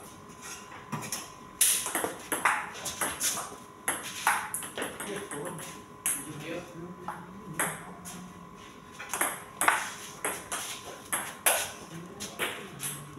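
Table tennis rally: the celluloid ball clicking sharply off the rubber bats and the table in quick back-and-forth exchanges.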